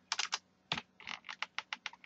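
Computer keyboard being typed on: a series of short key clicks, a few spaced ones at first, then a quicker run in the second half.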